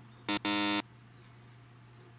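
An edited-in quiz-show 'wrong answer' buzzer sound effect: a short buzz followed at once by a longer one, a few tenths of a second in, marking the purchase as over budget.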